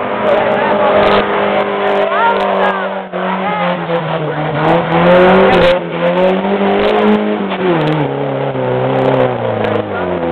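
Engine of a lifted Geo Tracker on 44-inch Super Swamper TSL tyres working hard through a deep mud hole. It holds a steady pitch for about three seconds, then revs up and down again and again as the tyres churn the mud.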